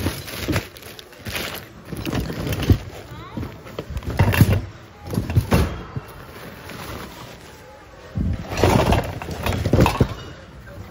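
Hands rummaging through a bin of mixed secondhand goods: irregular knocks, clatters and rustles as plastic containers, fabric and other objects are shoved aside. The sharpest knocks come a few seconds in.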